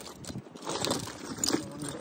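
Broken glass and debris clinking and rattling inside a bucket as it is handled, a few sharp clinks in the second half.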